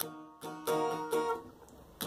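Acoustic guitar strumming a chord: three strums, at the start, about two-thirds of a second in and just after a second in, each left to ring and fade, part of a down-down-up-down-up strumming pattern.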